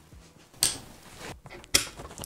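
Quiet movement and handling noises from a person shifting about near the microphone: two brief soft rustles, about half a second in and near the end.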